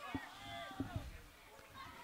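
Faint, distant voices calling out across a football field.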